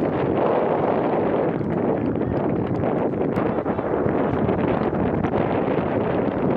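Wind buffeting an outdoor camera microphone: a steady rushing noise.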